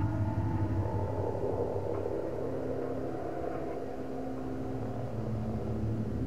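Low, steady rumbling drone with sustained held tones, the ambient sound design of a horror film's underscore.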